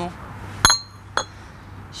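Dom Pérignon champagne bottles clinking together twice as they are lifted by the necks: a loud glassy clink with a brief ring, then a fainter one about half a second later.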